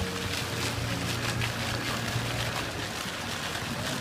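Fountain jets spraying and splashing down into the pool in a steady rush of water, with music from the show's loudspeakers faint underneath as a low held note.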